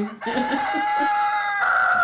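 A rooster crowing: one long crow held at a steady pitch that steps up higher near the end. It is laid in as a sound effect to mark the next morning.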